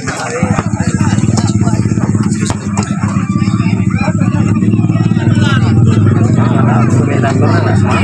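A small engine running steadily and loudly close by, starting suddenly about half a second in, with faint voices over it.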